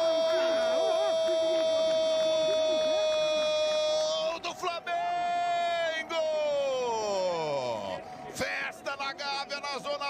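A football TV commentator's drawn-out goal cry of 'Gol!', held on one high note for about four seconds. A second long note follows and slides down in pitch before breaking off into shorter shouts.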